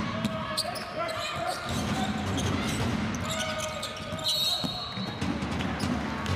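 Basketball bouncing on a hardwood court, with sneakers squeaking sharply as players cut and stop, in a large, echoing hall.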